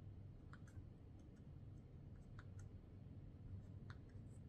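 Faint, irregular clicks from the buttons and rotary knob of a handheld HMR controller being pressed and turned, in groups about half a second, 1.5 s and 2.5 s in and once more near the end, over a low steady hum.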